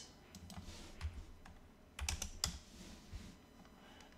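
A few keystrokes on a computer keyboard: separate short clicks spread over a few seconds, the loudest cluster about two seconds in.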